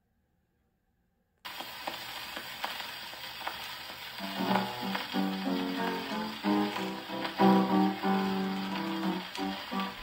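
A 1920s 78 rpm shellac record playing on an acoustic gramophone. After a moment of silence the needle's surface hiss and crackle start suddenly. About three seconds later the piano introduction begins, with no singing yet.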